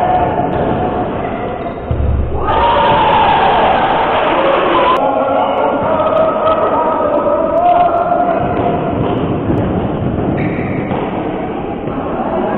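Echoing sports-hall ambience during a youth basketball game: overlapping children's and spectators' voices with a basketball bouncing on the court. The sound changes abruptly about two and a half and five seconds in.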